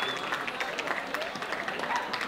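Audience applauding and cheering, dense irregular clapping with shouts and whoops over it.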